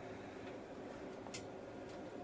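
Quiet steady hiss of room tone with a single faint, short click about a second and a half in.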